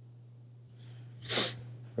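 A faint steady low hum, then about one and a half seconds in a single short, sharp breath noise from a man.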